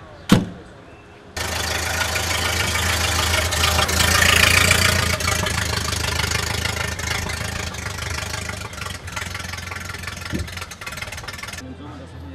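A sharp click just after the start. From about a second in, a car engine idles steadily, a constant low hum under a broad hiss, then cuts off abruptly near the end.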